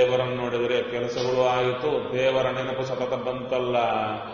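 A man's voice chanting a line of a Kannada devotional suladi, in long held melodic notes.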